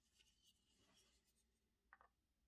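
Near silence, with faint scratching and rubbing from gloved hands handling plastic scale-model car parts, and a small click near the end.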